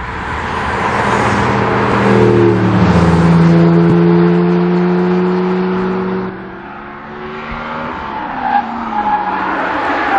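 Sports car engines of a passing convoy that includes an Audi R8 prototype and a Porsche 911: the engine note builds to a loud pass about three seconds in, drops in pitch and carries on before cutting off suddenly past the middle. Near the end another car engine approaches with rising revs.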